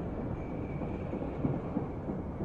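Steady low rumbling background noise with a faint, thin steady whine above it.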